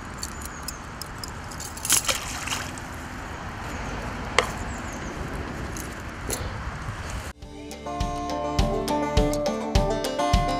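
Steady outdoor hiss with rustling and a few sharp metal clicks as a fish stringer's chain is handled and its spike pushed into the grassy bank by the water. About seven seconds in this cuts suddenly to strummed acoustic guitar music with a beat.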